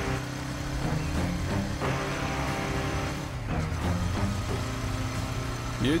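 Motorcycle engine running as the bike is ridden, its note shifting a few times.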